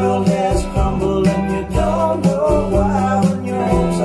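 A song with singing and guitar, played back over large hi-fi loudspeakers in a listening room: a native quad-DSD (DSD256) recording taken from an analog master tape, steady bass notes under a strummed rhythm.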